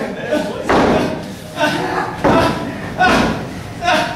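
Thuds of wrestlers hitting the ring canvas, about five sharp hits under a second apart, with shouting voices between them.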